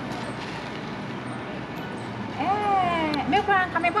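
Steady outdoor background noise, then a woman's voice speaking loudly and emphatically from a little past halfway.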